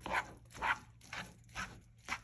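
Plastic slotted spatula stirring and scraping cooked lentils in a frying pan, in short strokes about twice a second.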